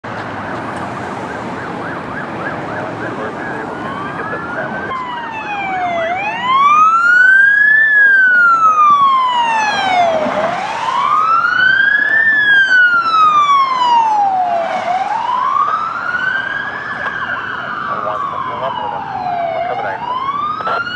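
Police SUV's electronic siren on a slow wail, rising and falling about every four and a half seconds. It grows loud about six seconds in as the unit drives past, over road traffic noise.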